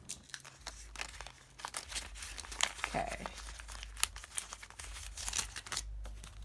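Paper sticker sheets being handled: an irregular run of small crinkles, crackles and clicks as stickers are peeled from their backing.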